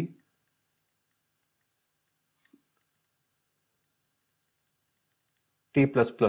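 Near silence with one faint, short click about two and a half seconds in and a couple of fainter ticks near the end.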